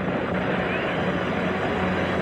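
Steady crowd roar and hiss from an old television broadcast of a horse race, with a low hum running under it.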